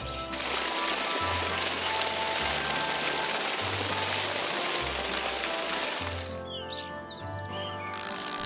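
Cartoon sound effect of wet cement mix pouring from a cement mixer's drum into a mould: a steady pouring noise that stops about six seconds in, over background music.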